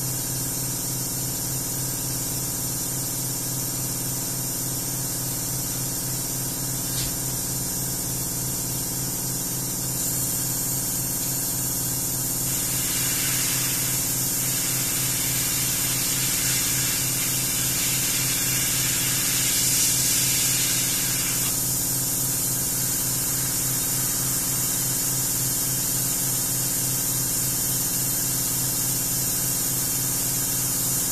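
Airbrush spraying paint onto a motorcycle wheel: a steady airy hiss over a low hum. The hiss grows fuller and louder for about nine seconds in the middle.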